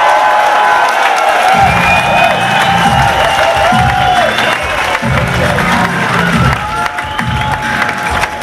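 Concert audience cheering and whooping in a hall over the start of an electronic rock song, with deep bass notes pulsing in about one and a half seconds in.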